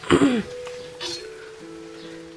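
A cough, then quiet background music of a few long held notes that shift to a lower note about halfway through.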